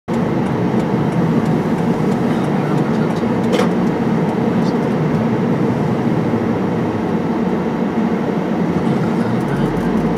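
Steady in-cabin noise of a car rolling slowly: a low, even engine and tyre hum. A single brief click comes about three and a half seconds in.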